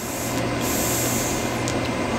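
A long draw on an e-cigarette atomizer as its coil heats freshly dripped clear vegetable glycerin: a steady hiss with fine crackling. This is 'tail piping', a step in cleaning the atomizer by burning the VG through it.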